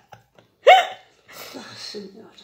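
A woman's laughter trailing off: a single short, sharp squeak with a rising pitch about two-thirds of a second in, like a hiccup, then faint breathy sounds.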